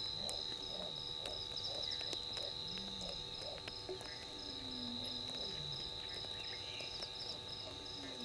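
Night chorus of insects and frogs: a steady, high-pitched insect trill runs on while frogs call in short repeated pulses about twice a second, with a few lower calls that rise and fall in pitch.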